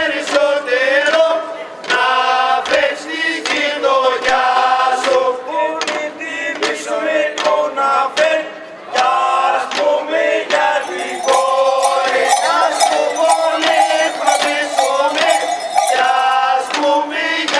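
Group of men singing a traditional folk song together without instruments, in sung phrases with short pauses for breath between them.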